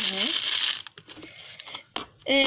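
Thin plastic produce bags crinkling and rustling as they are handled, loudest in the first second, then dying down to light rustles and small clicks.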